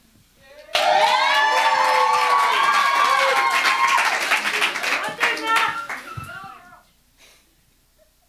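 Audience clapping and cheering, many voices calling out over the claps. It starts about a second in and dies away after about six seconds.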